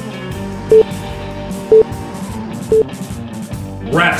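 Three short, loud countdown beeps from an interval timer, one second apart, marking the last seconds of an exercise interval, over background rock music with electric guitar. A rising swoosh starts right at the end as the interval changes over.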